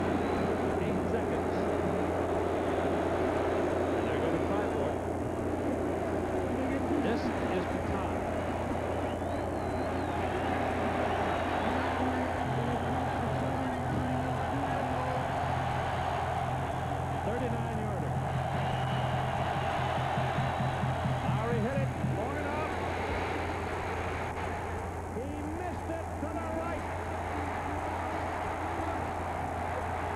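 Stadium crowd noise, a steady din of many voices, over a constant low hum. From about twelve seconds in until about twenty-two seconds, a low held tone sounds over the crowd.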